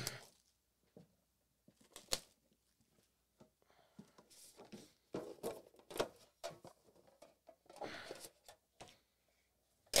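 Cardboard trading-card boxes being handled: scattered light knocks, taps and rubbing scrapes as the inner box is lifted out and its lid opened.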